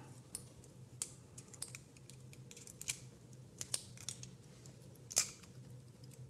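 ECG lead clips being unclipped one by one from the adhesive electrode tabs on the chest: a series of small, irregular clicks, the sharpest about five seconds in.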